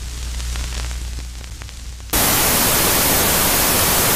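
Low hum with faint crackles, then about two seconds in a loud, steady hiss of analogue TV static cuts in suddenly.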